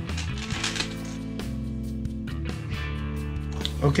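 Background music with sustained bass notes that change every second or so, under a few light clicks of small steel chain being handled on an RC crawler tire.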